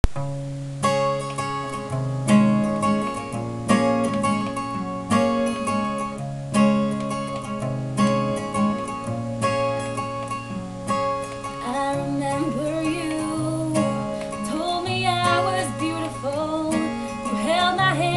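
Acoustic guitar strumming chords in an unaccompanied intro. A woman's voice comes in singing about twelve seconds in, over the guitar.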